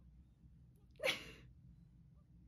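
A woman's single short, breathy laugh about a second in, over a faint low room hum.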